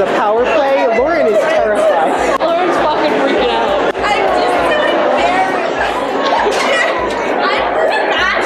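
Several voices talking and laughing over one another in a large, echoing indoor hall, with no single voice standing out.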